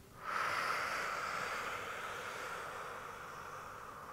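A woman's long audible exhale, starting a moment in and fading slowly over about three and a half seconds.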